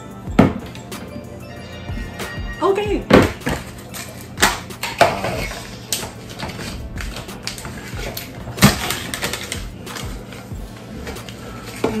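Background music with a few brief voice sounds, over which come several sharp clicks and knocks as a cardboard Pringles can and its plastic lid are handled.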